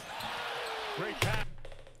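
Crowd noise in a basketball arena, coming through the game broadcast, with a short voice about a second in; it cuts off about one and a half seconds in.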